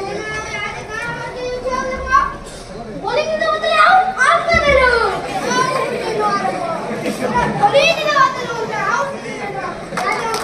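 Children shouting and calling out, several high voices overlapping, louder from about a third of the way in.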